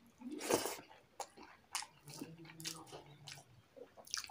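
Close-up eating sounds of a mouthful of rice and curry eaten by hand: a loud wet intake about half a second in as the handful goes into the mouth, then chewing with several sharp mouth clicks.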